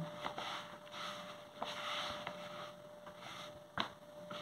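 Hands squeezing and kneading a shaggy flour-and-warm-water bread dough in a basin: soft, irregular squishing and rubbing as the water is worked in to bring the dough together. A single sharp click sounds near the end.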